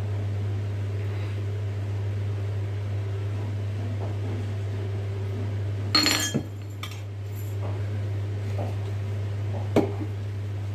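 A kitchen utensil clinking against a metal appe pan while the pan is being oiled: one ringing clatter about six seconds in and a sharp click near the end, over a steady low hum.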